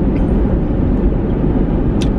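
Steady low rumble inside a car cabin: the car's engine and road noise.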